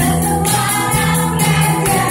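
Amplified live singing of a lively Christian praise song: singers on microphones with a small band, bass and keyboard, and the crowd singing along. A steady percussion beat runs at about four strokes a second.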